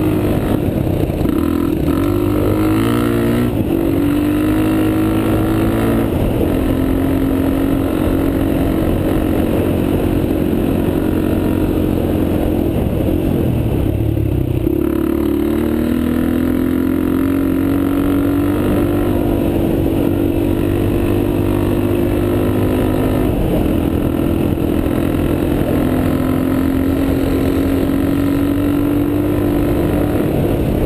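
Dirt bike engine running under way on a dirt trail, heard close up. Its pitch steps up and down several times and dips briefly about halfway through before climbing again.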